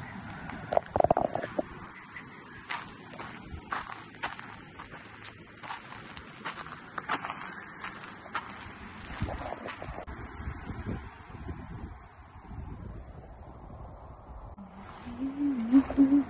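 Footsteps crunching on sandy, gravelly ground at a walking pace, with a brief louder burst about a second in. A voice hums near the end.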